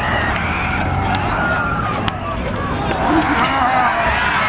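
Many voices of a gathered crowd talking and calling out at once, over a steady low rumble.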